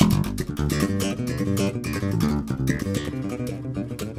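Electric bass played with the double-thumb slap technique: a fast, unbroken run of notes in the triplet pattern of thumb down on a muted string, left-hand hammer-on, then thumb up, giving many sharp slapped clicks between the pitched notes.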